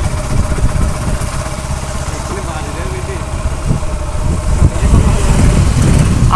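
Yamaha motorcycle engine running steadily while riding, heard from the handlebars as a constant low rumble.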